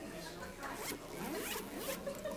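Low room noise from a seated audience in a hall, with two short rising rasps, one about a second in and one near the end.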